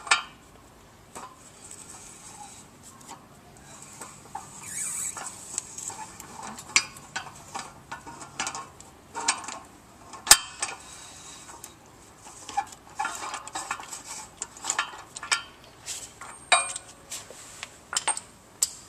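Steel socket and wrench working the hex of a pump's cartridge shaft seal loose: scattered metallic clicks and clinks, in clusters, with one sharp loud click about ten seconds in.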